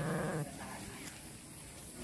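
A Garut sheep bleats once, briefly, right at the start.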